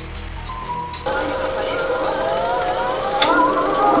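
A 35 mm film projector running with a rapid mechanical clatter, with music playing over it; the sound changes abruptly about a second in.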